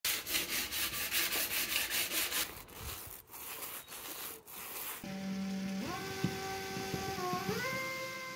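A sanding block rubbed back and forth over a painted radiator cover in quick rasping strokes, then a paint roller rolling over a board, then a Bosch cordless drill driving a screw, its motor whine stepping up in pitch twice.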